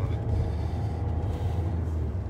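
Steady low rumble of a car heard from inside its cabin.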